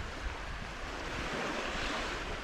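Small waves breaking and washing up a sandy shore, the wash swelling from about a second in, over a low rumble of wind on the microphone.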